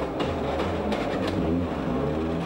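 Toyota Corolla WRC rally car's turbocharged four-cylinder engine running hard, its pitch rising and falling with the throttle.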